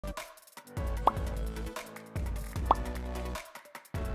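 Intro music with a deep bass beat and fast ticking percussion, with a short rising pop accent about every second and a half.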